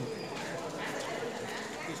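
Quiet outdoor background of distant voices with birds calling.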